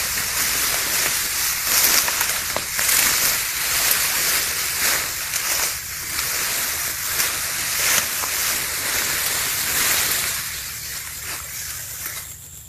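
Tall grass rustling and swishing against bodies and the camera as people push through it on foot, in repeated surges about once a second. It quietens near the end as the walking stops.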